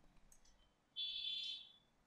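Mostly near silence, broken about a second in by a brief high-pitched electronic tone, like a beep, lasting about half a second.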